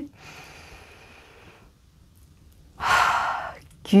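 A woman takes a long, faint breath in for about a second and a half and holds it. About three seconds in she lets it out through the mouth in one loud, short exhale, a relaxing breath released after a held inhale.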